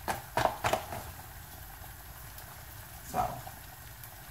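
Flour being shaken out of a paper bag into a large metal pot. There are a few short rustles of the bag in the first second, then a quieter stretch with one more rustle about three seconds in.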